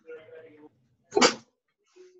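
Choppy video-call audio: a faint snatch of a voice, then just after a second in a single short, loud burst of a voice, broken off as the connection cuts in and out.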